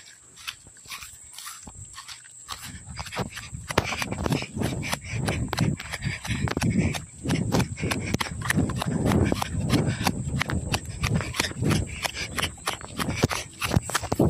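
Footsteps walking across grass and gravel, with the rubbing and knocking of a handheld phone on its microphone; the steps get louder and more regular about four seconds in.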